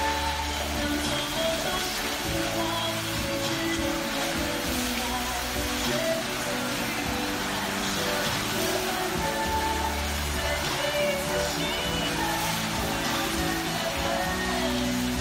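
Music playing over a steady hiss of falling water from the musical fountain's spraying jets.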